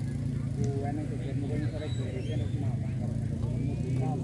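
Faint background chatter of several voices over a steady low hum.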